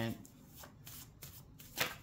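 Hands shuffling a stack of paper index cards: a soft papery rustle broken by several quick card snaps, the sharpest near the end.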